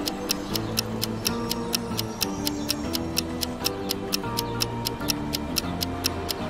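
Countdown timer music: a steady clock-like ticking, about four ticks a second, over a low bass and a simple held-note melody.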